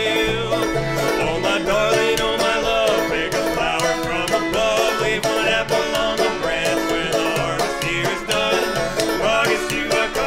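Old-time string band instrumental break: a banjo picking, a fiddle bowing the melody, and a plucked upright bass.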